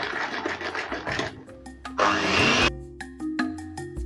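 Electric hand mixer whirring, its beaters churning milk and whipped-cream powder in a bowl, for about the first second. About two seconds in comes a brief loud rush of noise, then background music with a steady run of struck notes.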